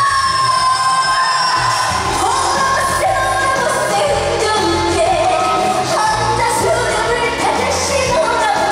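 A woman singing a trot song live into a microphone over amplified backing music. She holds one long note at the start, then moves on through the melodic line.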